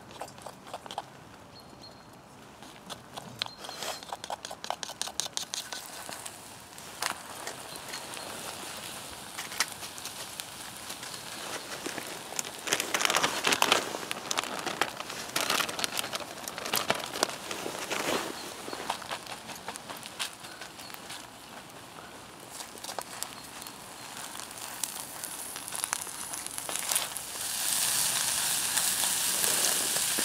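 Birch-twig fire crackling in a small wood-burning camp stove under a cast iron skillet of omelette, with scattered sharp pops. Around the middle a plastic bag rustles and crinkles as filling is shaken out of it onto the egg, and near the end a frying sizzle rises from the pan.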